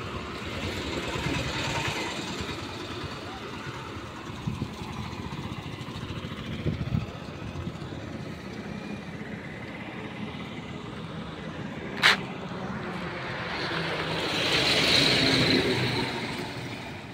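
Highway traffic noise with people talking in the background. A vehicle passes close near the end, and there is a single sharp click about twelve seconds in.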